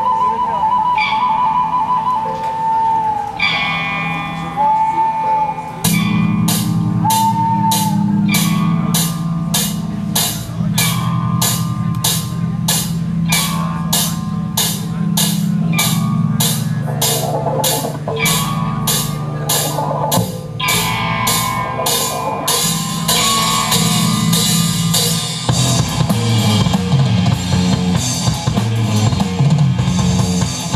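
A live rock band playing. For the first few seconds a high piping melody plays over a sustained backing. About six seconds in, the drums and full band come in with a steady beat of about two hits a second, and the playing grows denser and heavier near the end.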